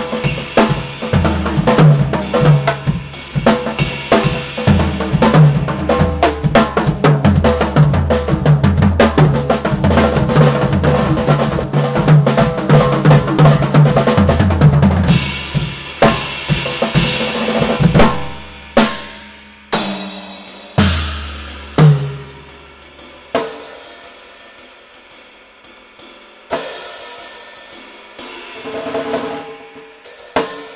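Acoustic drum kit played live: a busy groove of kick drum, snare and cymbals for about the first half. It then thins out into spaced single accents that ring out, with a few soft strokes and cymbal ring near the end.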